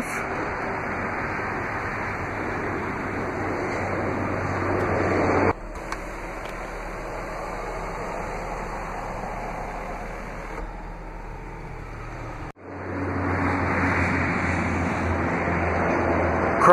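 Power panorama sunroof of a Jeep Grand Cherokee opening: a steady motor whir that grows louder, then breaks off about five and a half seconds in. A quieter steady hiss follows, and after a sudden break near the end there is steady outdoor noise with a low hum.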